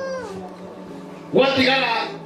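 A young child's high-pitched voice: a drawn-out sound trailing off and falling at the start, then a short utterance about one and a half seconds in, over a faint steady low hum.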